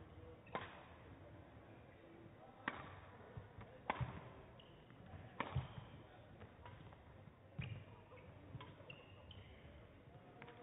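Badminton rackets striking a shuttlecock in a rally opened by a serve: five sharp hits spaced about one and a half to two seconds apart, with a few short squeaks of court shoes in between.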